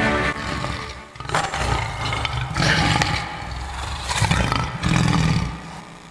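A lion roaring, about four heavy roars in a row from a second in until near the end, over the fading tail of orchestral music.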